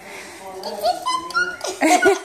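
Pug giving a few short whimpers, alongside children's voices and laughter.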